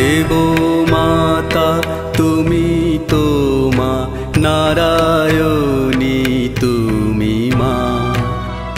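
A Bengali devotional bhajan to Durga: a singer holds long, bending sung phrases over instrumental accompaniment, with regular percussion strokes.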